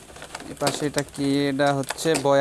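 Pigeon cooing: long, low, even-pitched coos in the second half, the last running on past the end. Before them, light clicks of a plastic packaging tray being handled.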